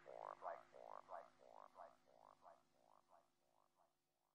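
The closing fade-out of a psytrance track: a short, stuttering electronic sound repeats about four times a second over a steady low chord, growing fainter until it dies away near the end.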